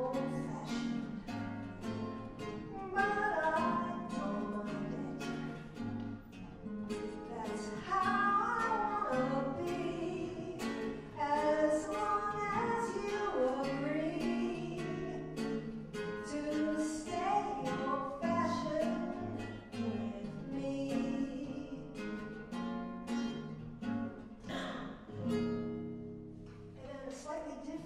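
A woman singing a song and accompanying herself with strummed chords on an acoustic guitar.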